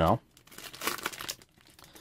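Plastic trading-card pack wrapper crinkling as it is torn open, for about a second starting half a second in.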